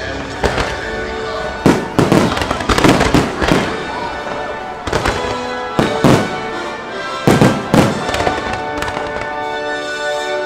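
Fireworks going off in a string of sharp bangs, some in quick pairs, with music playing throughout.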